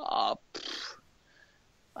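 A man's short breathy hesitation sound, then an audible exhale.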